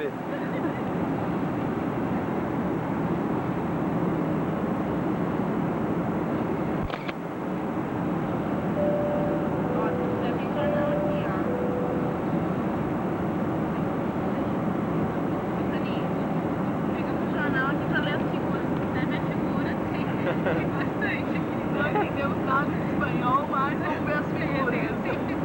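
Steady cabin noise of an airliner in flight: engine and airflow noise filling the cabin. A click comes about seven seconds in. Shortly after, a soft two-note tone sounds high-low, high-low, and faint voices murmur near the end.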